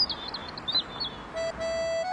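Birds chirping: a quick run of short, high chirps over a soft outdoor hiss, as ambience for the scene. About a second and a half in, a held musical note enters.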